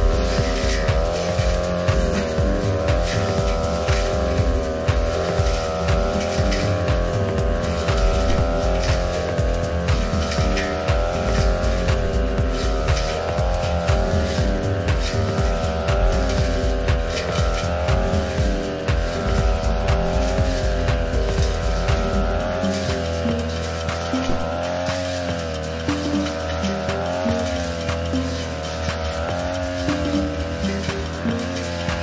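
Backpack brush cutter's petrol engine running steadily at high speed, its pitch wavering up and down as the 45 cm metal blade cuts young grass. Background music with a beat plays over it.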